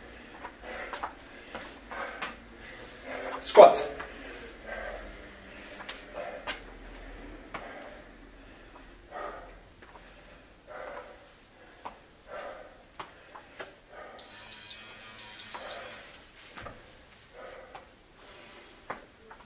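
A man moving about on a wooden floor: scattered short knocks and steps, with brief vocal sounds, the loudest about three and a half seconds in. A few short high-pitched electronic beeps come about fourteen seconds in.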